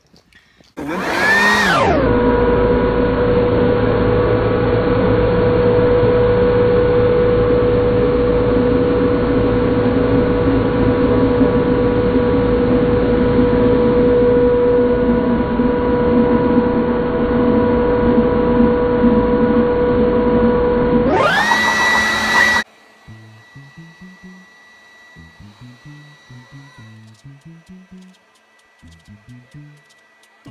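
Leaf blower running steadily at full speed with a strong high whine. Its pitch settles about a second in, then climbs briefly before it cuts off suddenly about 22 seconds in. Quiet background music follows.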